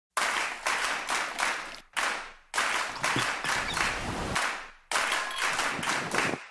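Applause: a crowd clapping in four stretches, each cut off abruptly, with short silent gaps between them.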